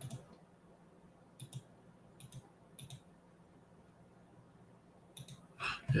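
Computer mouse buttons clicking: a few short, sharp clicks spread over several seconds, several of them in quick pairs, as colours are picked in an on-screen colour picker.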